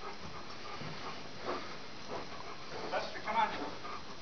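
A 15-year-old dog panting, with a few brief, faint higher-pitched sounds about three seconds in.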